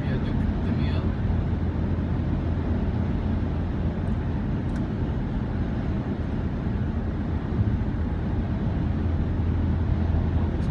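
Steady low road and engine rumble heard from inside a car cabin cruising at motorway speed.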